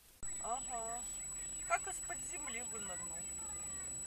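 Quiet talking voices, with a thin, steady high-pitched tone under them. Both come in suddenly just after the start.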